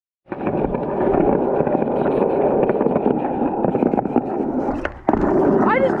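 Skateboard wheels rolling on concrete pavement with a steady gritty rumble. Near the end come a sharp clack as the board pops off the curb in an ollie, a brief lull while it is in the air, and a second clack as it lands, after which the rolling resumes.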